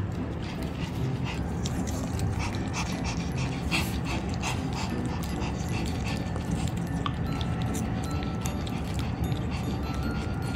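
Scottish Fold kitten licking and lapping a treat from a small cup held close to the microphone: a steady run of quick, wet licking clicks.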